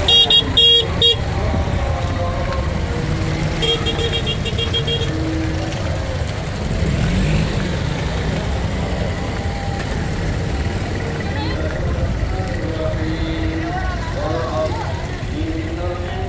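Busy street traffic with a steady low engine rumble. Several short horn toots come in the first second, and a horn beeps rapidly about four seconds in.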